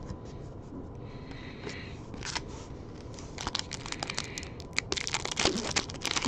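The foil wrapper of a 2022 Bowman Baseball card pack crinkling and being torn open. It starts faintly about two seconds in and grows denser and louder toward the end.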